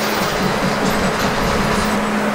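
Steady, loud rushing machine noise with a constant low hum underneath, filling a workshop.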